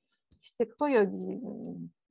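A woman's voice: after a brief pause, a short syllable, then a drawn-out vowel held at a steady pitch for about a second.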